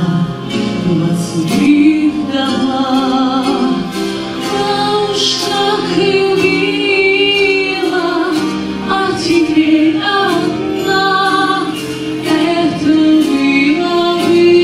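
A woman singing into a microphone over instrumental accompaniment, her long held notes sung with vibrato.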